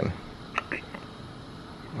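Quiet pause in a small room: steady low background with a few faint, brief soft clicks about half a second in.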